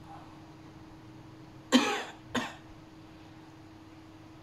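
A man coughs twice near the middle, the second cough about half a second after the first and quieter.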